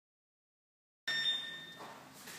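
Silence for about a second, then gym room sound cuts in abruptly with a short high ringing tone that fades within about half a second.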